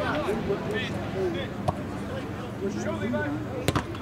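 A soccer ball kicked with a sharp thud near the end, with a lighter knock earlier, over distant shouts and calls of players on the field.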